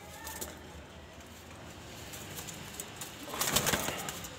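Caged domestic pigeons cooing low. About three and a half seconds in comes a loud, brief flurry of wing flaps as a pigeon flutters.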